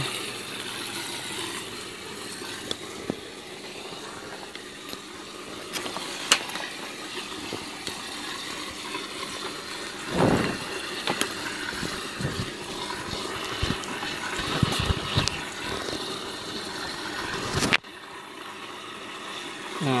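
Water running and splashing in a hydroponic nutrient reservoir tank, a steady wash of noise with a few low handling bumps; the sound drops off suddenly near the end.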